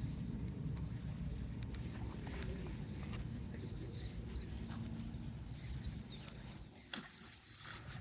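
Outdoor background with a steady low rumble, faint high bird chirps and scattered light clicks; a sharper click about seven seconds in, after which it goes quieter.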